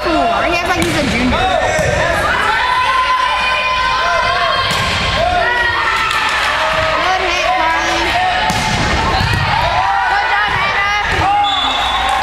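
Volleyball rally in a large gym: many players' and spectators' voices calling and shouting over one another, with a few sharp smacks of the ball being hit or striking the floor.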